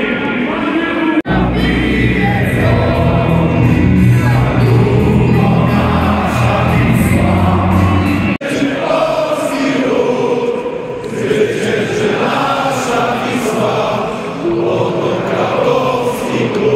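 A football stadium crowd sings together along with music over the public-address system, with heavy bass in the first half. The sound breaks off abruptly about a second in and again after about eight seconds.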